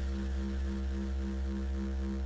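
Sustained low electronic drone from a live electronic music set: a deep steady bass with a couple of held higher tones and a slight regular pulse, no beat.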